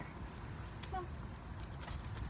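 A woman's short call of "come" to her dog about a second in, over a steady low background rumble, with a few faint clicks near the end.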